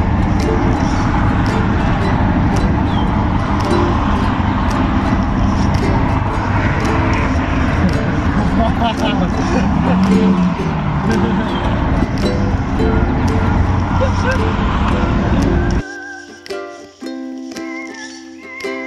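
Steady road and engine noise inside a van's cabin at highway speed, with background music mixed under it. About sixteen seconds in the road noise cuts off and the background music plays alone.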